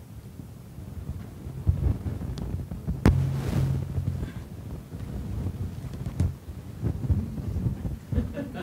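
Rumbling, crackling noise on the microphone feed, like a microphone being handled or rubbed, with several sharp knocks; the loudest knock comes about three seconds in.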